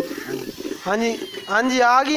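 Tabby kitten meowing: two meows, each rising then falling in pitch, a short one about a second in and a longer one near the end.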